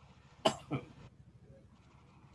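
A person coughing twice in quick succession, about half a second in, the second cough weaker than the first.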